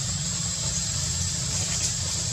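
Steady outdoor background ambience: a continuous low rumble with a constant high-pitched whine over it, with no distinct events.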